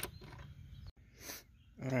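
A single sharp click, then faint handling noise as a bolt is turned by hand with a socket extension. The sound cuts out completely for a moment about a second in, and a short hiss follows.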